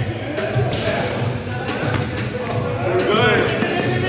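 A ball bouncing repeatedly on a gymnasium's hardwood floor, roughly two bounces a second, with voices starting near the end.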